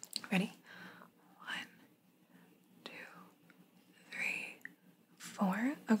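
A woman whispering softly in short, scattered phrases, then speaking aloud just before the end.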